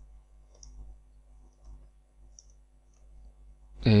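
Faint computer keyboard keystrokes, about five scattered taps as a short line of code is typed. A man's drawn-out 'eh' starts near the end.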